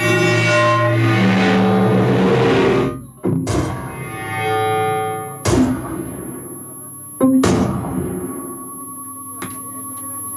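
Experimental improvised music from electric guitar and electronics: dense layered drones that cut off about three seconds in, followed by three sharp struck attacks about two seconds apart, each fading slowly.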